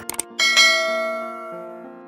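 Subscribe-button animation sound effect: a quick click or two, then a bell chime about half a second in that rings on and slowly fades.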